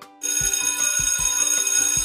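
Alarm-clock bell sound effect ringing loudly, starting a moment in: a fast, high, rattling bell ring that signals the countdown timer has run out.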